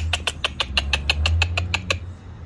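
A rapid, even run of short clicks, about ten a second, over a steady low hum.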